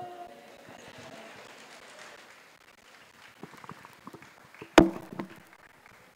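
A held sung note fades out at the start, leaving quiet room ambience in a reverberant hall with a few faint ticks. A single sharp knock comes about five seconds in.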